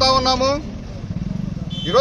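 A motor vehicle engine running nearby, a low rumble with a fast, even pulse that stands out in a short pause between a man's words.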